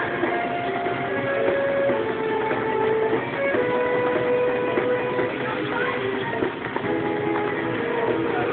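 Music with guitar, a run of held notes that change every second or so.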